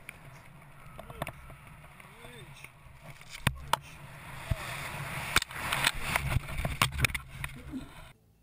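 Wind rushing past a skydiver in the air, growing louder over the second half, with several sharp clicks through it.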